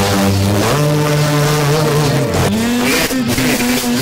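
FM radio broadcast of music with sustained pitched notes, heard through a Blaupunkt car radio. About halfway through, the sound shifts as the radio is switched from 97.20 MHz to another station on 93.40 MHz.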